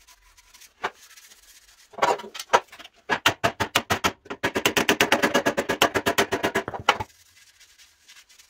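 Hammer striking the steel sheet-metal running board of a 1948 GMC truck: a few blows about two seconds in, then a fast, even run of about ten ringing blows a second for some four seconds that stops suddenly.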